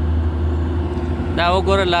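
Steady low drone of heavy diesel truck engines, Hino trucks in a loaded convoy, running without any change in pitch.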